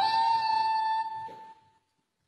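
A ney, the Persian end-blown reed flute, holding one long, steady note that dies away about a second and a half in.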